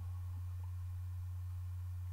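A steady low hum, one unchanging tone with nothing else over it.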